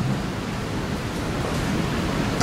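Steady background hiss in the room, with no other sound standing out.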